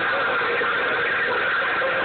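Steady hiss of static from a CB radio receiving a distant station, with faint wavering voices buried in the noise.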